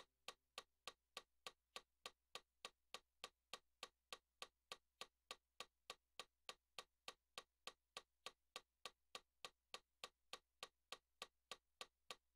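Faint metronome clicks at a steady tempo, about three and a half a second (around 200 beats a minute).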